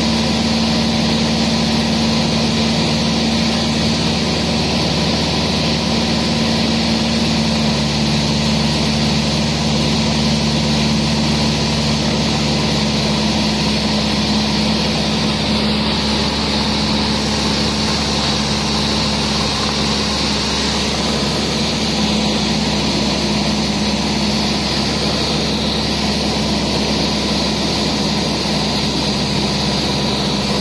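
Light plane's engine and propeller droning steadily, heard from inside the cabin.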